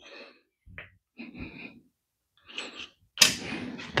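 A few faint, short sucking noises from a syringe drawing through thin tubing as the RC excavator's hydraulic oil tank runs nearly dry, with a louder rush near the end.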